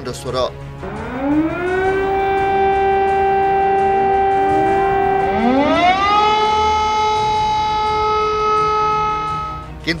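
Air-raid siren winding up from a low pitch to a steady wail, then winding up again to a higher pitch about six seconds in and holding it until it cuts off just before the end.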